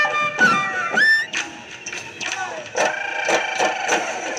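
Live Bihu folk music: dhol drums beaten in quick strokes under a high wind-instrument melody, with a held note that slides up about a second in.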